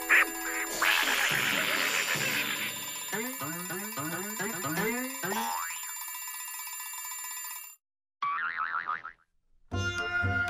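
Cartoon sound effects with music: a sharp crash at the start and a clattering burst, then a quick run of about ten springy boings, each a rising twang of a bouncing spring. The sound cuts off suddenly, followed by a brief wavering squawk before the music returns.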